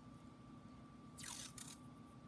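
Washi tape pulled off its roll: one short papery rasp a little over a second in, against a faint steady hum.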